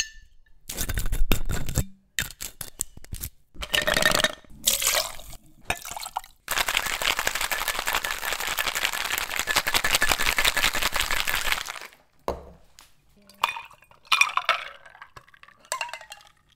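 A margarita being mixed: ice and glass clinking and clattering, then a cocktail shaker full of ice shaken hard in a fast, even rattle for about five seconds, then a few more clinks.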